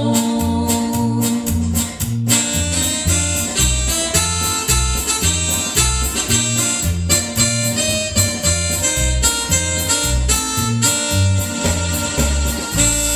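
Instrumental passage of a Mexican ranchera, with an electronic keyboard carrying a reedy, accordion-like melody over an electric bass that keeps a steady beat.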